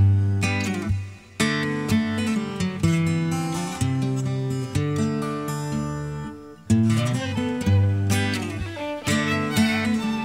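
Acoustic guitar playing the instrumental intro of a folk song: plucked chords ringing and dying away, with two short breaks, about a second in and past the middle, before each new phrase starts with a strong attack.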